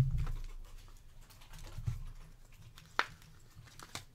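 Trading cards and a plastic card holder handled on a desk: soft low bumps at first, then a single sharp plastic click about three seconds in and a lighter click just before the end.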